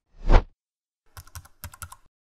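Animated-graphics sound effects: a whoosh with a low thud about a third of a second in, the loudest sound, then a quick run of keyboard typing clicks in the second half, as if text were typed into a search bar.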